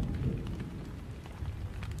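Low, steady rumbling ambience with a soft hiss above it, a rain-and-thunder-like background bed.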